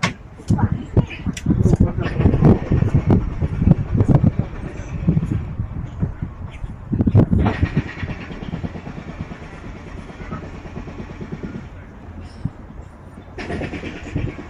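Indistinct voices over a motor vehicle's engine running, loudest in the first half and around seven seconds in, then settling lower.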